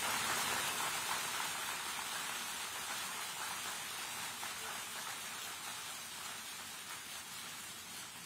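Audience applauding, a steady patter that slowly dies away.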